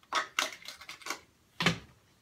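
Small hard toiletry items being handled and set down on a countertop: a handful of sharp clicks and knocks, the loudest about a second and a half in.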